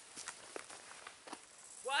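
Faint, irregular footsteps of a hiker walking on a dry, leaf-littered dirt path.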